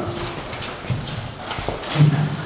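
A few short knocks and taps over faint low murmuring voices.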